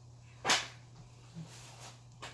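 A single short, sharp smack or click about half a second in, over a steady low hum.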